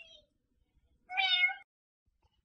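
A single short meow about a second in, lasting about half a second.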